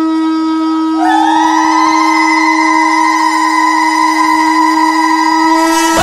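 Conch shell (shankha) blown in one long, steady note, joined about a second in by a second, higher, wavering note held alongside it.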